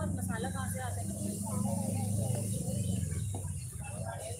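Indistinct voices of people on and around the cricket field, over a steady low rumble.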